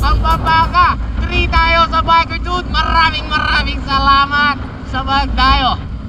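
High-pitched voices in quick, pitched phrases, with no clear words, over a steady low rumble of wind on the microphone of a moving bicycle.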